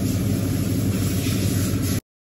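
Steady low machine hum of room machinery with no speech or horn, cutting off suddenly at the end.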